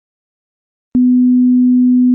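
A steady, low, pure test tone of the kind played over television colour bars. It switches on abruptly with a click about halfway through and holds at one unwavering pitch.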